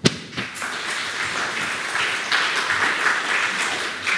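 Audience applauding: a few separate claps at the start quickly fill into steady applause.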